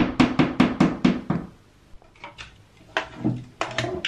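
Hammer tapping a nail into a bathroom wall: a quick run of sharp taps, about six or seven a second, for the first second and a half, then a few scattered knocks.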